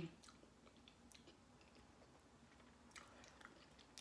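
Faint chewing of a mouthful of peach cobbler, with a few soft scattered mouth clicks.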